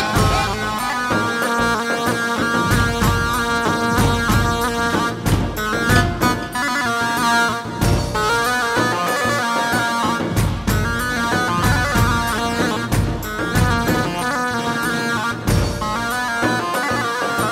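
Live dance music: a davul, the large double-headed bass drum, beats a steady rhythm under a stepping melody line.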